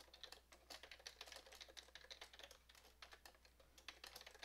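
Computer keyboard typing: faint, quick, irregular keystrokes as a line of code is typed.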